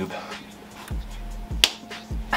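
A coin being tossed and caught by hand, with one sharp click a little past halfway.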